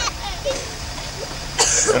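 People talking quietly over a steady low rumble, then a short, harsh breathy burst from a person near the end, just before the talk picks up again.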